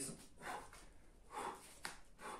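A man breathing hard during a commando plank exercise: two breathy exhalations about a second apart, with a short sharp tap near the end.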